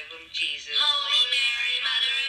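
Singing voice: a few short sung syllables, then long held notes from about halfway through.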